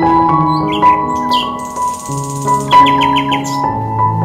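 Calm instrumental background music of held keyboard notes and piano, with bird chirps over it, including a quick run of repeated chirps near the end.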